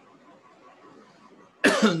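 A short, loud burst of a person's voice near the end, a laugh or cough-like sound, over faint room tone.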